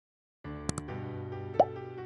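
Intro music with sustained chords starting about half a second in, two quick clicks just after it starts, and a short rising pop sound effect near the end.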